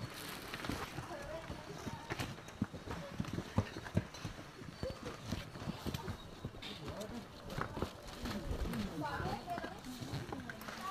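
Footsteps and scuffing of many hikers shuffling down a dirt trail, with irregular knocks of boots and gear, under indistinct background chatter.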